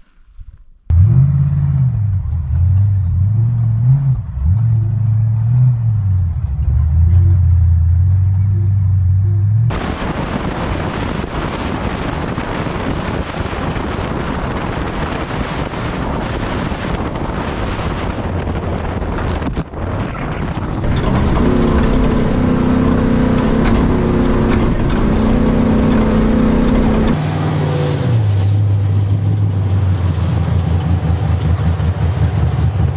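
Off-road race pre-runner truck driving fast on a desert dirt track, its engine running hard under wind and road noise. The revs climb for several seconds about two-thirds of the way through, then drop back near the end. A steady engine with a low, wavering pitch is heard for the first several seconds, before the roar starts.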